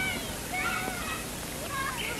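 Film soundtrack played back in a hall: faint, short, high-pitched calls in the background of the scene, between lines of dialogue.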